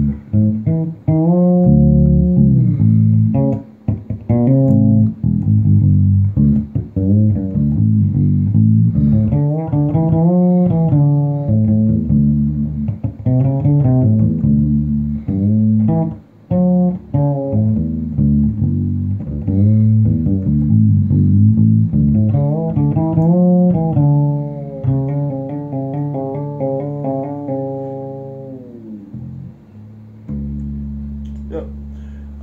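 SX Ursa 3 fretless electric bass with PJ pickups, played fingerstyle through an amp with both pickups on, the bridge pickup favoured and the tone rolled about halfway. It plays a continuous groove with frequent sliding glides between notes, ending on a held note that fades and slides down.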